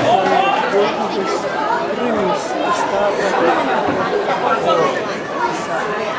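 Several spectators chatting at once, their voices overlapping into steady conversational chatter with no single clear speaker.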